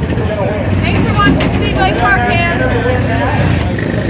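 A woman talking over a steady, loud low rumble of race-car engines in the pits.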